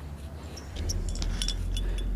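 Metal climbing hardware (carabiners and cams on a harness) clinking in several short, light chinks as the climber moves at a placement, over a low rumble that comes in just under a second in.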